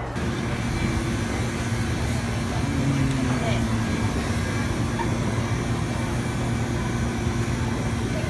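Steady low rumble of a car in motion, heard from inside the cabin, with a constant low hum.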